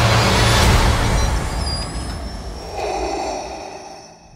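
Film sound design of a starship's engines, a loud rumble with a hiss that fades away over the last couple of seconds. A held tone comes in near the end.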